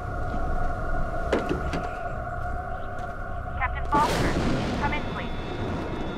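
Film soundtrack mix: several steady, sustained tones run through, and a sudden loud noisy burst about four seconds in fades away over the next second.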